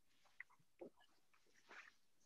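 Near silence: room tone with a few faint, brief rustles.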